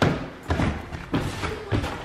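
Footsteps climbing wooden stairs: four thuds about half a second apart.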